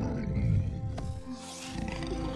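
Animated dragons' low growling rumble, sliding down in pitch over the first second, followed by a breathy exhale, over soft background music.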